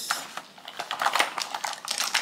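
Makeup brushes clicking and tapping against each other and the case as they are handled and slotted into a makeup bag: a quick, irregular run of small clicks, busiest in the second half.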